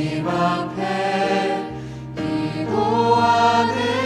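Live contemporary Korean worship music: a group of singers singing together into microphones over a band. A short lull about two seconds in, then the singing swells again.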